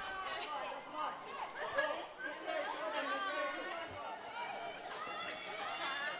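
Voices on and around a football pitch, players and onlookers calling out and chattering, heard from a distance through the pitchside microphone.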